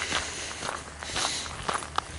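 Footsteps of a person walking outdoors at an even pace, with no speech.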